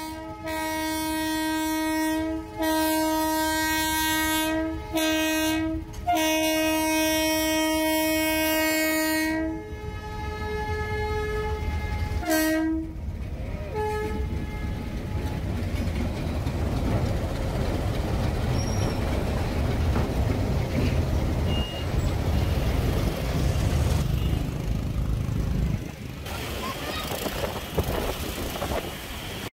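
Diesel locomotive horn sounding several long blasts in a row over the first ten seconds, with a short final blast soon after. Then the steady low rumble and clatter of a freight train's tank wagons rolling past a level crossing.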